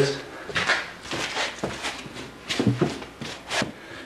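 Shoes scuffing and stepping on a hard bare floor in irregular strides, about half a dozen sharp scrapes and footfalls, as a man moves around in a slam-dance shuffle in a small, echoing room.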